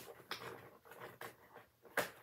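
Faint handling noise: soft rustling with a few irregular light clicks as a cardboard calendar door is opened and small pieces are handled, with a sharper click near the end.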